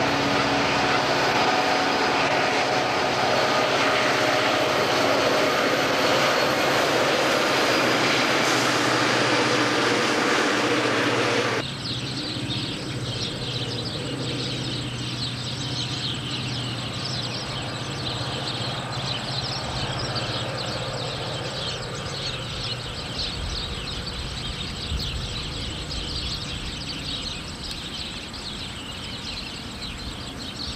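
Several diesel-electric freight locomotives passing close, their engines working in a loud, steady drone. About a third of the way in the sound cuts off abruptly to quieter outdoor ambience with a low steady hum and a faint high flickering.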